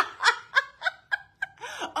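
Two women laughing hard together: short bursts of laughter that tail off, with a breathy intake of breath near the end.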